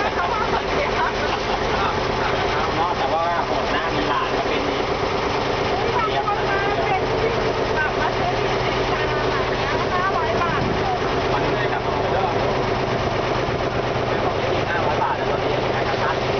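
A river boat's engine running with a steady drone under rushing water, with indistinct voices of people talking aboard over it.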